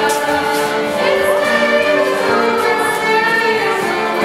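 Group singing of a folk dance song, accompanied by fiddle and accordion.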